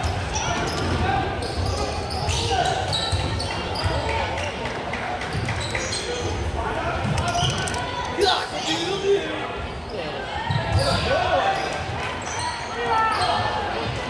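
Basketball being dribbled on a gym's hardwood floor during play, bounces echoing in the large hall, under indistinct voices and shouts from players and spectators.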